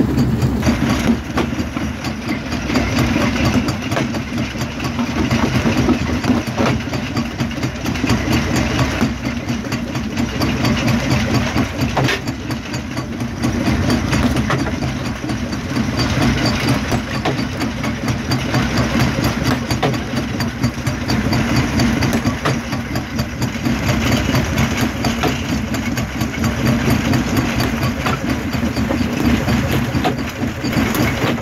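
Heavy crushing-plant machinery at a jaw crusher running steadily with a low engine-like drone, with a few sharp knocks now and then.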